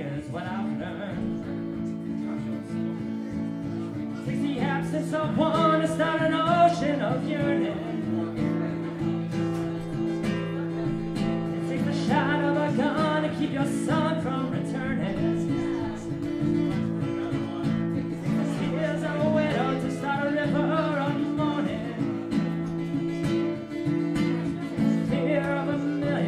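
A man singing solo to his own strummed acoustic guitar. Sung phrases come and go over steady, ringing chords.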